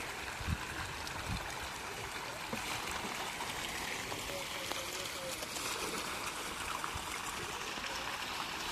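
A dense school of pangasius catfish splashing at the pond surface as they compete for feed, a steady churning of water.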